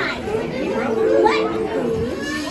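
Speech: animated-film dialogue, cartoon dogs talking.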